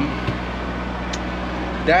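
A sailboat's inboard engine running steadily while motoring, a constant low hum heard from inside the cabin.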